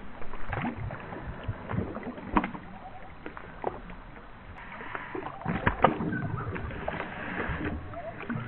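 A Boston Terrier swimming and splashing in pond water, with irregular splashes and sloshing. The biggest splashes come about two and a half seconds in and again around five and a half to six seconds.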